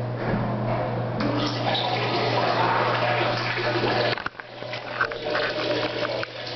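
Steady rush of water in a toilet stall over a low hum, cutting off suddenly about four seconds in.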